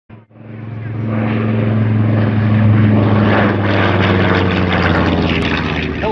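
Propeller aircraft's piston engine running with a steady deep drone, swelling up over the first second and then holding.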